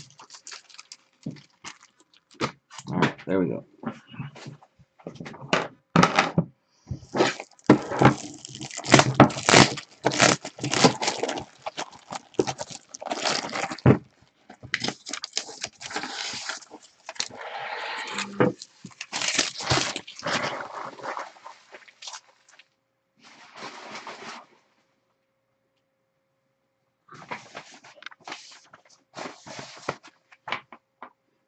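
Plastic wrap crinkling and a stack of rigid plastic top-loader card holders clattering as they are unwrapped and handled by hand. It comes as a run of irregular crackles and clicks that stops for a few seconds near the end, then resumes briefly.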